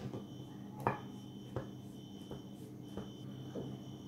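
Kitchen knife cutting through layers of buttered raw phyllo in a glass baking dish: a handful of faint, short clicks and taps as the blade goes through and touches the glass, the clearest a little under a second in. A faint steady hum lies underneath.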